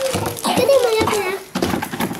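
Voices, a young girl's among them, drawn-out and wordless, with some crinkling of wrapping paper as a gift is pulled open.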